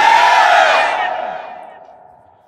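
Reverberant echo tail of a man's shouted sermon voice through a loudspeaker PA system, trailing off after his words and dying away over about two seconds.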